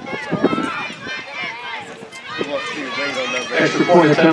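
Several people's voices talking and calling out on the sideline of a football game, growing louder near the end.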